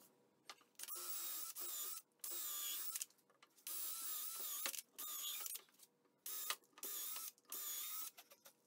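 Porter-Cable cordless drill drilling pilot holes down through a wooden shelf board, sped up fourfold so its motor whine is high-pitched. It runs in a string of short bursts of under a second each, with silent gaps between.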